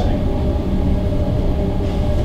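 Steady low rumble with a faint, even hum: the room's background noise.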